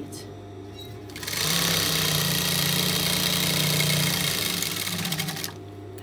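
Industrial lockstitch sewing machine: its motor hums, then about a second in the machine runs steadily, stitching a seam for about four seconds before stopping near the end.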